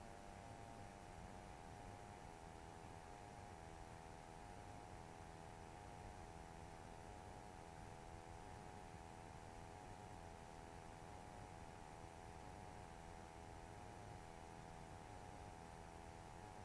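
Near silence: the audio drops out suddenly, leaving only a faint steady hum and hiss.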